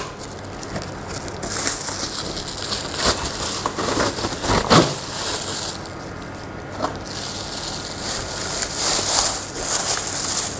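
A cardboard box being opened by hand and a clear plastic bag crinkling and rustling as the product is pulled out, in uneven bursts with a few sharp knocks.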